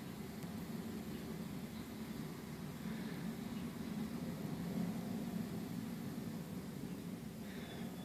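A steady low hum with hiss over it, with a couple of faint high chirps about three seconds in and again near the end.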